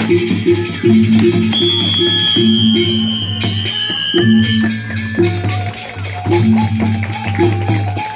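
Traditional Sasak percussion ensemble music accompanying the Peresean stick-fighting dance: a repeating figure of short low pitched notes over a steady low drone, with jingling percussion throughout. A long, slightly falling high note is held for about three seconds in the first half.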